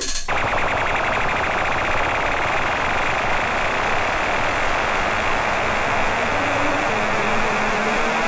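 A loud, steady wall of harsh noise in an industrial DJ set played from vinyl, taking over as the beat drops out at the very start. A couple of faint low notes come in near the end.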